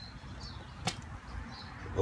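A single short click a little under a second in, from the hands handling a power plug and a plastic outdoor smart switch, over faint steady background noise.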